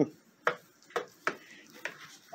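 Hens pecking at a treat in a blue plastic scoop on top of a plastic pet carrier: a few sharp, irregularly spaced beak taps on the plastic.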